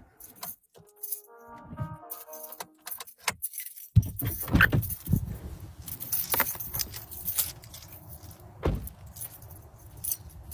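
A short run of stepped electronic tones, then from about four seconds in, jangling metal and rustling handling noise with clicks and a few louder knocks as a phone is carried out of a car.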